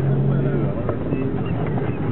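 A 4x4's engine and driving rumble heard from inside the cabin during dune driving on sand. A steady low engine hum drops away about two-thirds of a second in.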